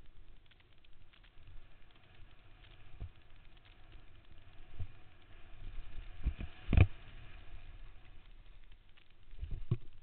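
Mountain bike clattering and thudding over a rough dirt downhill trail, with a low running noise and several sharp knocks from bumps, the loudest about seven seconds in.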